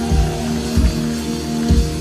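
Live rock band playing loudly through a PA: a sustained electric guitar chord rings while the drums strike three low accents about half a second to a second apart.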